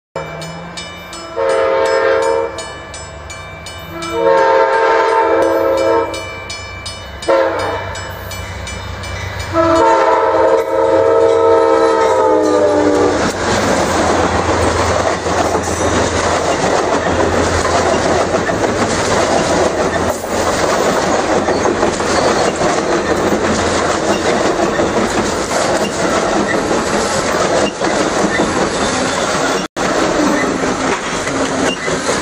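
Amtrak Coast Starlight passenger train's locomotive horn sounding a chord in four blasts (long, long, short, long), the last one dropping in pitch as the engine passes. Then comes the steady rolling noise of the bilevel Superliner cars' wheels on the rails as the train goes by.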